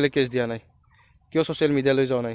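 A man talking in two short phrases, with a pause of about a second between them.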